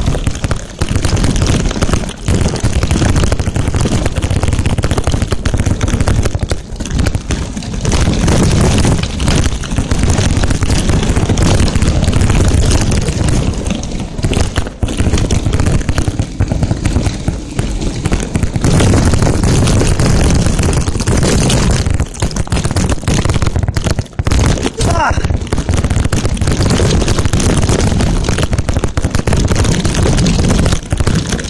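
Wind buffeting the camera microphone, mixed with tyre rumble and the rattle of a Haro Flightline 26-inch mountain bike rolling fast down a gravel dirt road. The noise is loud and unbroken, full of irregular knocks and thuds from the bumps.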